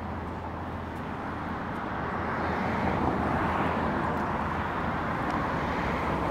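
Steady rush of road traffic passing close by, growing a little louder about two seconds in.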